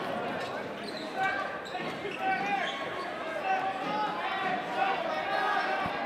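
Basketball being dribbled on a hardwood gym floor, with crowd voices in the echoing gymnasium.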